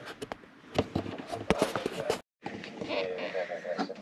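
Scattered light clicks and knocks of things being handled, cut off by a brief dropout about halfway, followed by a low voice.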